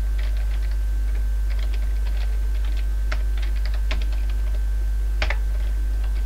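Computer keyboard being typed on: irregular runs of key clicks with a few sharper keystrokes, over a steady low hum.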